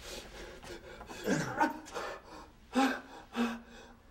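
A person's heavy breathing with short, wordless moans rising and falling in pitch, about a second and a half in and again near three seconds, over faint rubbing.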